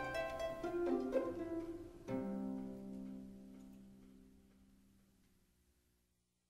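Orchestral film score: strings with plucked notes, then a held chord about two seconds in that fades away to silence near the end, closing the cue.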